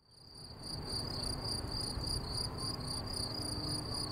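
Crickets chirping in a steady, even pulse of about four chirps a second, fading in from silence over the first second, over a low background rumble.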